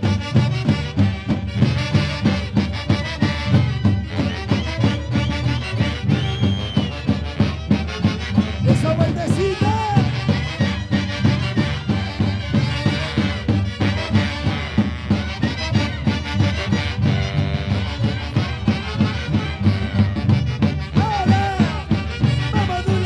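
Live Peruvian orquesta típica playing a santiago: a section of saxophones carrying the melody in unison over a steady, regular drum beat.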